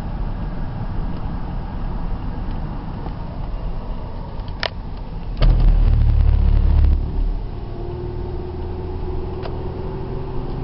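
Steady road and engine noise inside a moving car. Two sharp clicks come near the middle, followed by a loud low rumble lasting about a second and a half, and a steady drone joins near the end.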